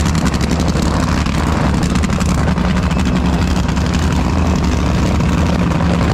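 Nitro Funny Car's engine idling steadily and loud as the car rolls back toward the starting line.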